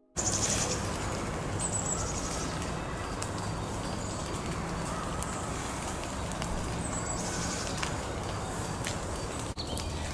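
Outdoor ambience: a steady rushing background with a faint low hum, and a bird's short high trills a few times.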